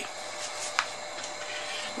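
Steady background hiss with faint steady tones from the bench, with a couple of brief soft rubs or rustles about half a second and just under a second in, as a paper notepad is handled.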